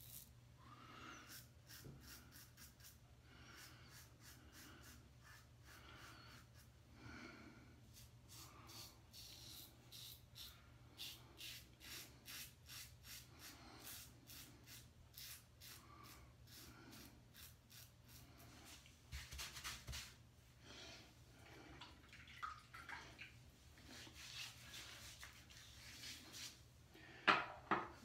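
Above The Tie M1 safety razor scraping through lathered stubble in many short, faint strokes on the second shaving pass, with a louder rustle near the end.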